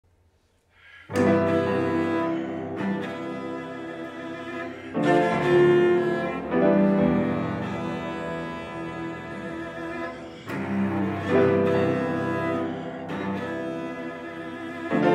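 A cello and piano play classical music. It begins about a second in after a near-silent start, with a few strong new entries every several seconds.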